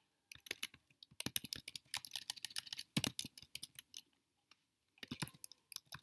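Typing on a computer keyboard: a quick run of key clicks, a pause of about a second past the middle, then a few more keystrokes near the end.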